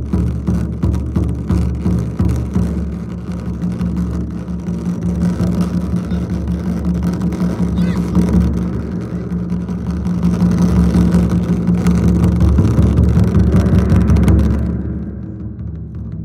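Japanese taiko drums in a fast continuous roll, mainly on a large taiko drum, making a dense low rumble that swells louder in the second half and then drops away sharply shortly before the end.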